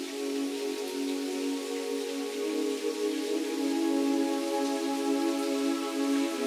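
Ambient background music of soft held chords that shift slowly, over an even hiss like falling rain.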